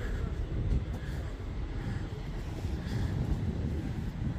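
Low, steady rumble of city street traffic.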